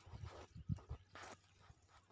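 Faint handling sounds: a few soft low bumps in the first second, then a short rustle just past a second in, as a hand moves through strawberry leaves and takes hold of a berry's stem over dry pine-needle mulch.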